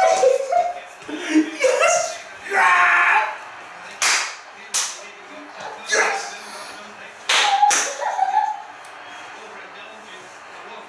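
Excited shouts and laughter from a man and a boy, with a handful of sharp slaps about four, five, six and seven seconds in.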